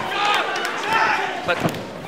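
Ringside commentary by a man's voice, with a single sharp thump about one and a half seconds in as a punch or kick lands in a heavyweight kickboxing exchange.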